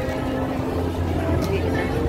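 Steady low hum of a vehicle engine, heavier from a little under a second in, with voices of people around.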